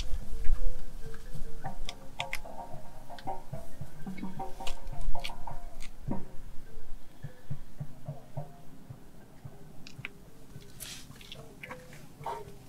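Rustling, light clicks and taps of a folding mesh car sunshade being unfolded and handled, with a few low thumps; busier in the first half, quieter near the end.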